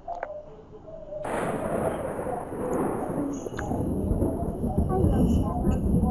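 Thunder: a sudden crack about a second in, followed by a long low rumble that builds and is still going at the end.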